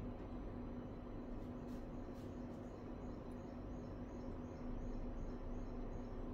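Quiet room tone: a steady low hum with a faint constant tone.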